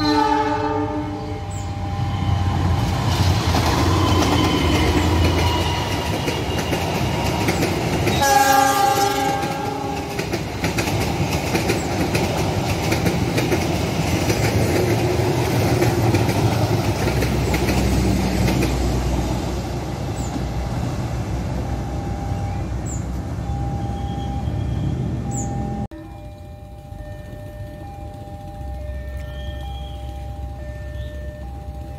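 CC206 diesel-electric locomotive sounds its horn, a short chord of several notes at the start and a longer, louder blast about eight seconds in, then passes close by with its passenger coaches in a steady loud rumble of wheels on rail.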